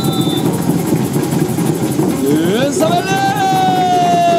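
Samba drums rolling in a continuous dense rumble. About two and a half seconds in, a voice rises into one long held shout over it.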